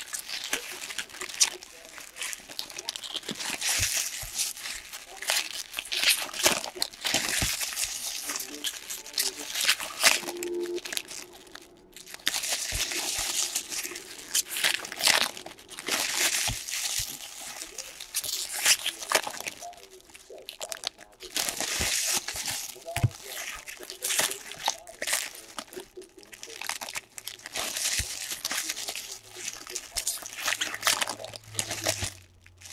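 Foil trading-card pack wrappers being torn open and crumpled by hand: crinkling and crackling foil that comes in bursts, with brief lulls between packs.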